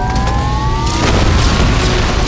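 Film sound effect of a fiery explosion: a loud, deep boom with a rising whine over it, and a fresh burst about a second in.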